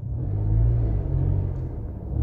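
Car engine running, heard from inside the cabin as a low, steady hum.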